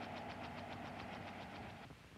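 Faint hovering helicopter, its rotor chopping in a quick, even beat over a steady hum; it stops near the end.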